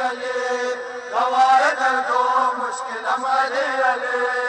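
Men chanting a Muharram noha in long, drawn-out sung lines, holding the word "Ali".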